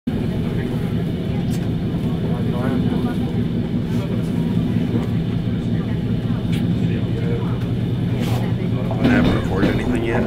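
Steady rumble and hum of a moving passenger train, heard from inside the carriage. Faint voices are mixed in, and a man starts speaking near the end.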